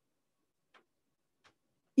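Near silence with two faint ticks, about 0.7 s apart.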